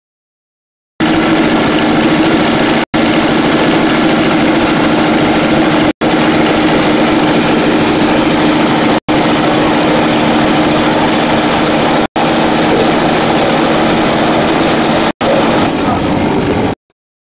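Amphibian jet's engine running steadily and driving its large air propeller: a loud, steady drone with a low hum. It starts about a second in and cuts out for an instant about every three seconds.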